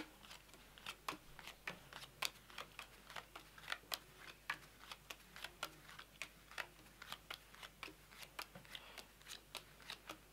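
Playing cards dealt one at a time from a deck onto a tabletop, each card landing with a faint click, about three a second.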